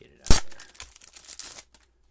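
A sharp thump, then crinkling of a clear plastic bag as a hard plastic graded-card slab is slid out of it. The crinkling lasts about a second and a half and stops before the end.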